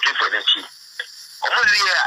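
Speech only: a person talking, with a short pause in the middle.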